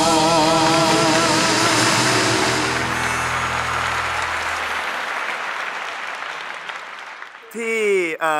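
A singer holds the song's final note with vibrato over the band's closing chord, which dies away about halfway through. Studio applause runs alongside and fades out gradually, and a man starts speaking right at the end.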